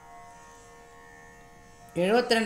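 A faint, steady drone of several held pitches, the sruti accompaniment that sounds under Carnatic singing, heard alone in a pause between sung phrases.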